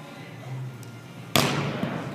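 A volleyball struck hard by a hand in an attack or block, one sharp smack about a second and a half in that echoes briefly around a large hall.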